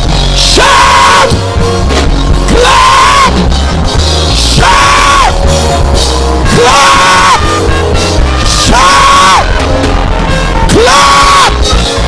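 Loud live band music with a strong beat, with a voice over it letting out a high, held yell about every two seconds.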